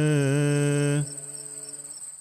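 A voice chanting, holding one long steady note with a slight waver, which breaks off about a second in and leaves a faint fading tail.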